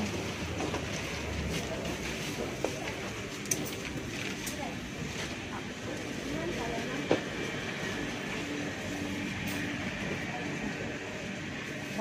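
Steady background bustle of a busy street market: a constant murmur of distant shoppers' voices and general noise, with a few brief sharp knocks.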